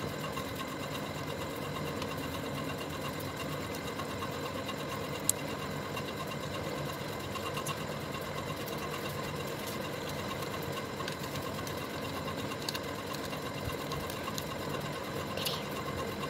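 Steady mechanical hum of a small motor running, with several constant tones; a single sharp click about five seconds in.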